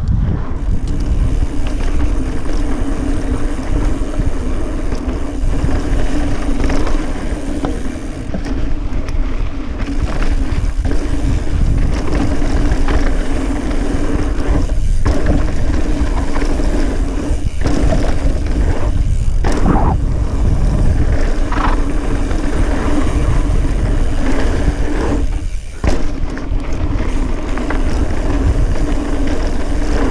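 Mountain bike descending a dirt trail at speed: tyres rolling over dirt and wind rushing over the microphone, with a steady buzz that breaks off briefly a few times.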